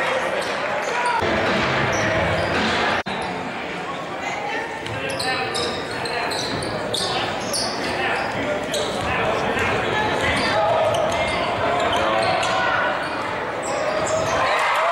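Basketball gym during live play: indistinct crowd and player voices echoing in a large hall, with a basketball bouncing on the hardwood court.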